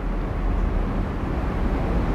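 A steady low rumble of background noise, with no speech.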